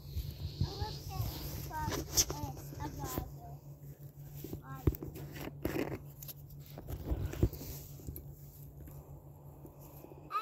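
Faint, distant children's voices with scattered knocks and rubbing close to the microphone, the sound of the phone and a plastic container being handled.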